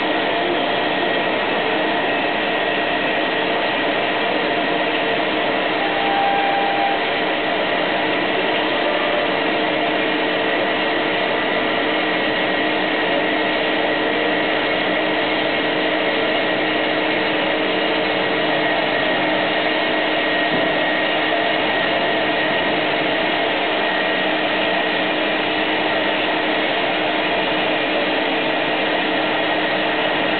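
IMET MAXI band saw running and cutting through a solid plastic block: a steady machine noise with several held tones that does not change throughout. A short higher tone sounds briefly about six seconds in.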